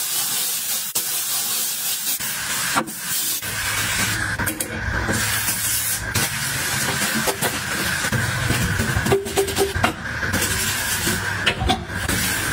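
Steady hissing spray of a foaming cleaner onto a ceramic washbasin, mixed with a hand scrubbing and wiping the basin, with a few light knocks.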